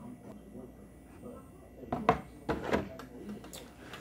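Handling noise from objects being moved on a tabletop: quiet at first, then a few short knocks and clicks from about two seconds in, with some rustling.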